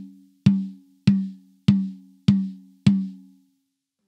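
Pearl Vision small rack tom struck evenly with a drumstick, about six hits roughly 0.6 s apart, each ringing with a clear pitched note that dies away quickly. It is a tuning check after the top head was tightened half a turn at each lug over a tighter bottom head, and the note sits a little high for the tuner's taste.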